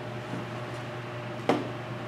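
Steady low hum of a small room, with one short sharp click about one and a half seconds in.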